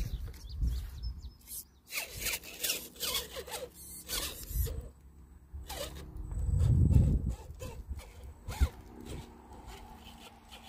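Dry stalks and crop debris crackling and snapping in irregular crunches as a Redcat Gen 7 RC crawler drives down over them. A louder low rumble comes about seven seconds in.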